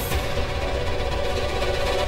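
Dramatic background music with a heavy low rumble under held tones, opening with a sudden swish at the very start.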